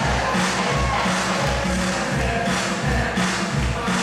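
Latin dance music for a ballroom competition, with a steady thumping bass beat of about two beats a second, played over the hall's sound system.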